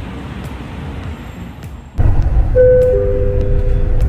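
Road traffic noise, then from about two seconds in the louder low rumble of a Dubai Metro train. Over the rumble a two-note descending chime sounds, the chime that comes before the next-station announcement.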